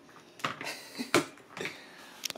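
Handling noise from a handheld camera being moved about close to the body: a few short knocks and clicks, the sharpest a little past the middle.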